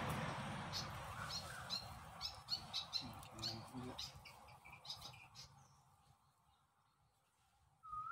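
Small birds chirping, with many short, high calls through the first five seconds. Under them is a rustling hiss that is loudest at the start and fades away, and the last couple of seconds are nearly silent.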